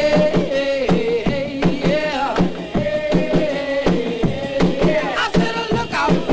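Early-1960s rock and roll record played from a 45 rpm vinyl single: a full band with a steady driving beat and wavering melody lines.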